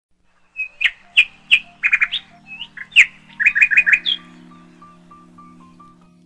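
Birds chirping in a quick run of sharp, high calls for the first four seconds, over soft background music of held notes with a simple repeating melody that continues after the chirps stop.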